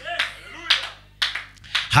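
A few irregular sharp claps, with short bits of a man's voice through a microphone between them.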